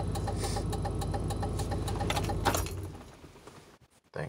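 A 1995 Chevrolet Suburban K1500 idling, with a rapid, regular ticking from the flasher, which ticks even though no lights are flashing: a sign of a faulty multifunction turn-signal/hazard switch. About two and a half seconds in there is a click, and the engine sound and ticking die away.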